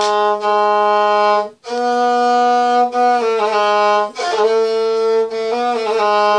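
Gusle, the single-string bowed folk instrument, played solo: long held notes with quick wavering ornamental turns, broken by short bow changes, with a brief gap about a second and a half in after which the pitch steps up.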